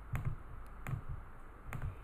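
A few soft computer mouse clicks, irregularly spaced, as a colour is picked and a shape is selected in design software.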